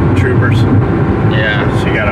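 Steady road and engine noise inside the cabin of a Porsche Cayman S at cruising speed, with a voice talking over it twice.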